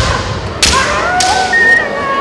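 Kendo bout: a heavy stamping thud on the wooden floor at the very start, then the sharp crack of a bamboo shinai striking armour about half a second in. Long, high-pitched kiai yells from the fighters follow, one falling in pitch near the end.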